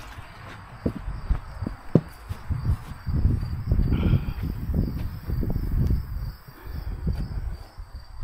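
Footsteps across grass with thumps from the handheld camera, heaviest in the middle stretch, while insects keep up a faint, steady high chirring in the background.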